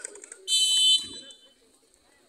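Referee's whistle blown once, a single steady high blast of about half a second, the signal for the penalty taker to shoot.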